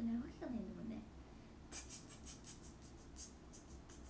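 A woman's voice for about the first second, then a quick run of about a dozen light scratching sounds close to the microphone, from something being handled.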